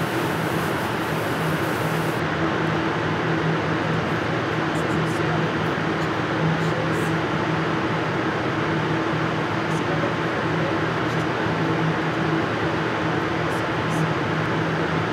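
Steady mechanical hum with a constant low drone from the mirror-cleaning booth's equipment. A hiss of water spraying from a hose stops about two seconds in.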